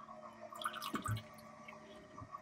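Fresh water from a watermaker's thin product hose dribbling and dripping into a plastic jug in faint little trickles, over a faint steady hum, with one soft low knock about a second in.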